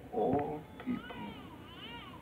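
A newborn baby crying thinly, its wavering cries rising and falling in pitch, starting about a second in.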